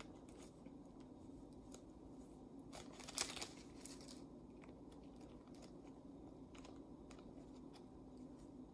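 Faint handling noise of string and a thin plastic parachute canopy being knotted by hand. A brief cluster of small clicks comes about three seconds in.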